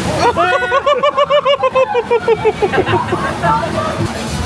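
A person laughing in a long run of quick, high-pitched 'ha' pulses, about six a second, fading out near the end, over the rushing noise of the log flume's water.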